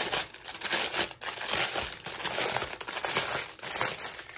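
Clear plastic packaging crinkling and rustling as hands dig through it to reach a diamond painting kit's bundle of small bagged drills; an irregular, crackly rustle that comes and goes.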